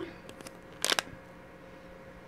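A quick cluster of small sharp clicks about a second in, from jewelry crimping pliers being set on a crimp bead.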